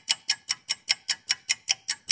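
Clock ticking rapidly and evenly, about five sharp ticks a second.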